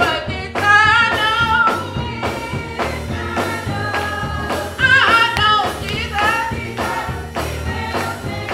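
Gospel song: voices singing over instrumental accompaniment with a steady beat.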